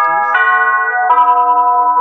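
An electronic chime tune: sustained, bell-like chords that change twice, about a third of a second in and again about a second in, with the last chord held. It is much louder than the surrounding talk.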